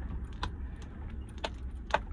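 Low, steady rumble of a vehicle on the move, heard inside the cab, with three sharp light clicks or rattles about a second in, near the middle and near the end.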